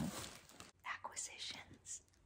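A woman whispering under her breath: a few short, soft, unvoiced bursts.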